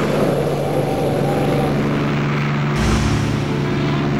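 Sci-fi engine sound effect for an animated hovering spaceship: a steady low hum with a hiss over it, under background music, with a deeper rumble coming in near the end.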